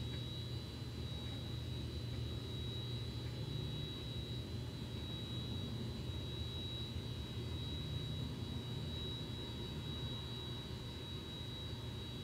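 A steady low background hum with a thin, high-pitched whine running through it, unchanging throughout.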